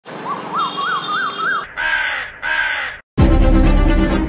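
Male Asian koel calling: five short whistled notes, each rising and falling, climbing higher in pitch one after another. Two harsh caws follow, then loud music starts suddenly near the end.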